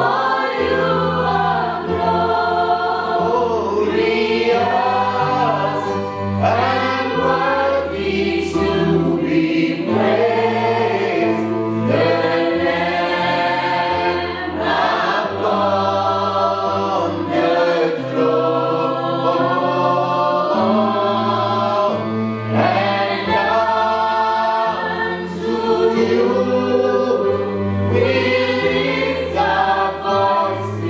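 Church worship singing: a man leads a slow worship song into a microphone with the congregation singing along, over low held accompaniment notes that change every couple of seconds.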